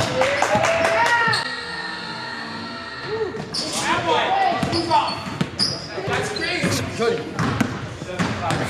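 Basketballs bouncing on a hardwood gym floor, a run of sharp thuds, with young players' voices calling out over them.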